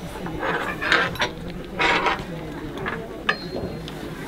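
Metal tuning forks clinking and knocking against each other and the table as they are picked up, over the low chatter of a group of children.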